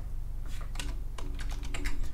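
Computer keyboard keys tapped a handful of times in short, separate clicks, typing a value into a slider. A faint steady hum runs underneath.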